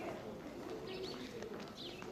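Birds calling with two short high chirps about a second apart, over the low background murmur of a crowd of people walking and talking.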